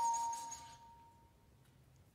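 Bass flute holding a sustained note that fades away about a second in, leaving quiet room tone.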